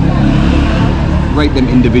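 A low, steady rumble of a motor vehicle engine, with voices talking over it in the second half.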